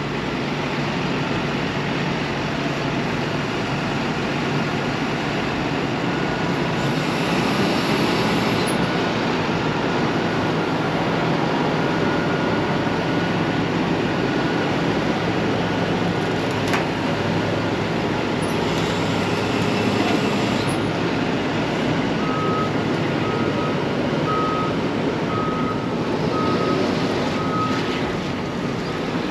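Heavy vehicle engine running steadily. A backup alarm beeps about once a second over the last several seconds.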